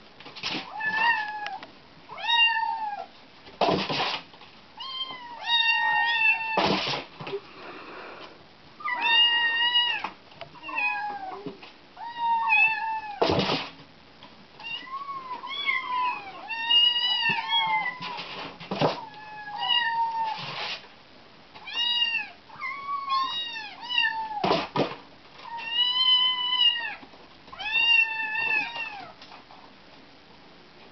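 Kittens meowing over and over, high-pitched calls following one another with hardly a pause, each rising and falling in pitch. A few short sharp noises fall between the calls.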